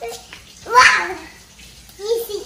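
A young child's short, breathy vocal sound with a falling pitch, just under a second in, with a fainter voice sound at the start.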